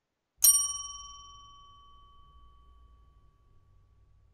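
A single bell ding about half a second in, its bright ringing fading away over about three seconds.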